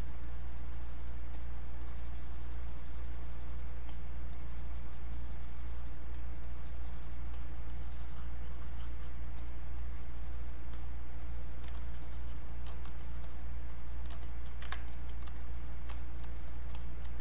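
A steady low electrical hum on the recording, with faint scratching and scattered clicks of a stylus on a graphics tablet and computer keys as the mesh is sculpted.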